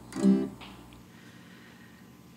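A single chord strummed once on an acoustic guitar, dying away within about half a second.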